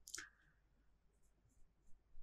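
Near silence: faint room tone, with a brief faint sound right at the start.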